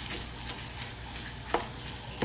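Raw ground beef with diced onion and green bell pepper sizzling in a frying pan as a plastic meat chopper breaks it up and stirs it, with a sharp click about one and a half seconds in.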